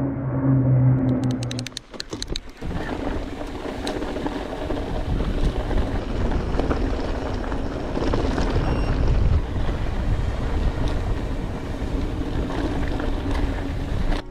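For the first two seconds a C-130 Hercules turboprop flies over with a steady low drone. Then come wind rushing over the microphone and the rumble of mountain bike tyres on a dirt singletrack at speed.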